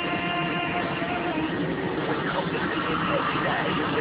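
A radio playing inside a moving vehicle: a held musical note for the first second or so, then talk, over steady engine and road noise.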